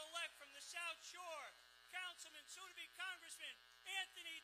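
A raised, high-pitched voice in short phrases, each sliding down in pitch, over a faint steady hum.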